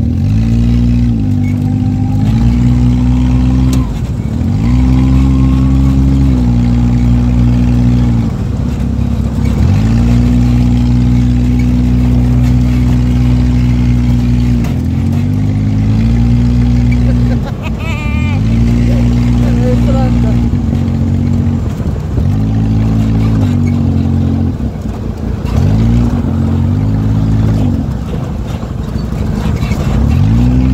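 Dune buggy's small engine heard from on board, repeatedly revving up to a steady high note under throttle and dropping away when the throttle is eased, about eight times, as it drives across sand.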